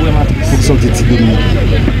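A person speaking, with a steady low hum underneath.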